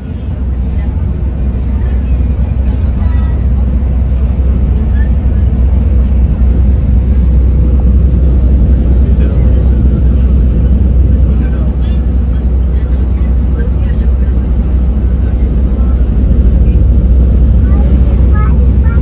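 Steady low rumble of a coach bus on the move, heard from inside the passenger cabin: engine and road drone.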